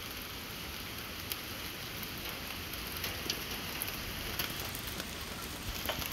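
Steady, even background hiss with a few faint short ticks scattered through it.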